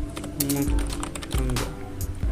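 Typing on a computer keyboard: a quick, uneven run of key clicks over background music with a steady bass.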